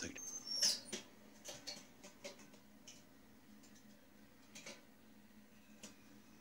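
Movement and handling noise: a short high squeak that falls in pitch about half a second in, then scattered clicks and rustles, over a faint steady low hum.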